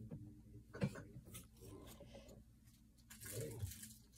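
Faint handling noise from a compound bow being moved about: a few light knocks and rubbing sounds, the sharpest about a second in.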